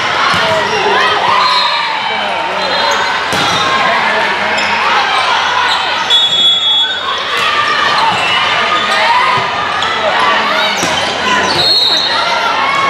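Volleyball rally in a gym hall: the ball struck a few times in passes, sets and hits, over steady chatter and calls from spectators and players.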